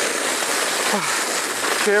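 Steady rushing hiss of a sled sliding fast over a packed-snow run, the runners on snow mixed with wind rush.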